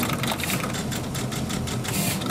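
Surface-mount pick-and-place machine running, its placement head moving rapidly over a circuit board: a fast, dense clatter of clicks over a steady motor hum.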